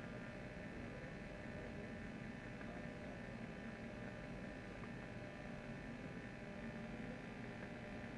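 Steady electrical hum and hiss from a badly working microphone line, with no other sound standing out.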